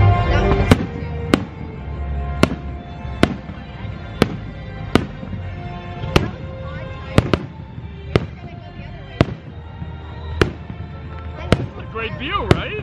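Aerial fireworks bursting, with about fourteen sharp bangs spaced roughly a second apart, some closer together, over a bed of music.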